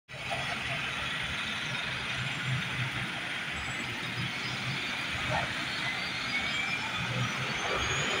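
Double-decker bus engine idling at a stop, a steady low hum under the general noise of a bus terminus.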